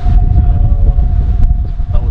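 Wind rumbling on the microphone, with a steady, unwavering drone at one pitch held underneath it from an unseen source.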